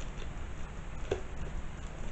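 Faint handling sounds of a small packet being turned over and opened by hand: a few light ticks and rustles, with one small click about a second in.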